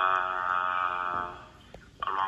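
A person's long, flat-pitched hesitant "uhhhh" coming over a speakerphone line with a thin, phone-like tone. It lasts about a second and a half and fades out.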